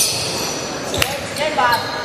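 A basketball bouncing once on a hardwood gym floor about a second in, among the short high squeaks of sneakers and players calling out near the end.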